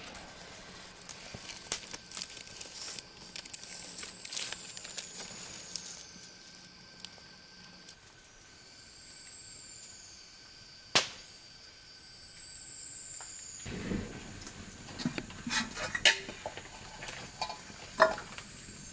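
Small wood fire crackling with scattered sharp pops, one louder pop about eleven seconds in. In the last few seconds a metal cooking pot and firewood are handled at the fire, with clattering and knocks.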